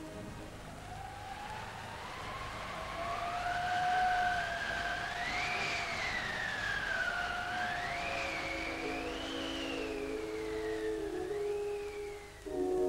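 Film score: a single high tone glides slowly and unevenly up and down, siren-like, over a held note. About eight seconds in, a lower chord of sustained notes enters beneath it.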